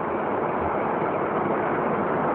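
Steady hiss of background noise from a low-quality recording, with no distinct events.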